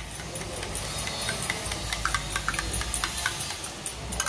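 Eggs being beaten in a bowl with a spoon: quick, irregular clicks of the spoon against the bowl.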